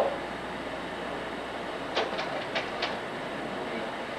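Changing the projected slide during a lecture: a quick run of about five light clicks about two seconds in, over steady room and projector hiss.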